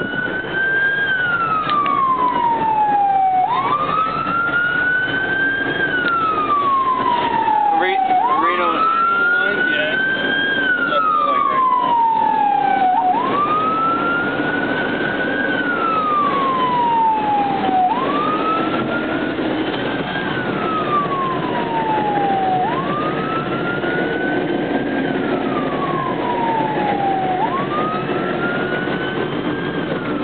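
Emergency vehicle siren sounding a slow wail, about six cycles. Each cycle climbs in about a second and slides down more slowly, one cycle roughly every five seconds, over a steady background rumble.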